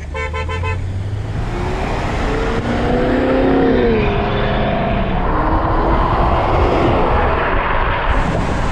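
A car accelerating hard: the engine's pitch climbs, drops at an upshift about four seconds in, then climbs again. Heavy wind and road noise comes through an open window and grows louder with speed.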